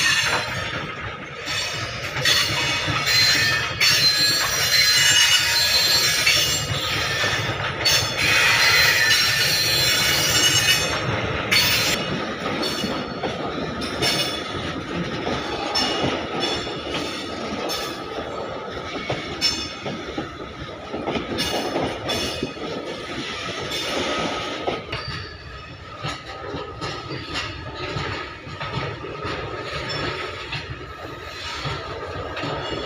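Goods train wagons rolling past on steel rails, the wheels squealing in high metallic tones, loudest in the first ten seconds or so. Through it, the wheels clack over the rail joints.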